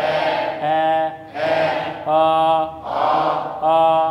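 A man's voice chanting the Dinka vowel ɛ over and over, each held about half a second at a steady pitch, alternating a breathy version with a clear one.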